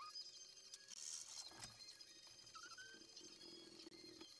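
Near silence: faint room tone with a brief, faint chirp-like sound just before three seconds in.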